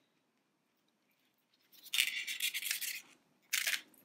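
About a second and a half of near silence, then roughly a second of scratchy rustling from thin metal craft wire being pulled and handled, and a brief second scrape near the end.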